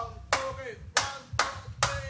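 Four sharp handclaps a little under a second apart, each with a short ring in the room, counting in the band.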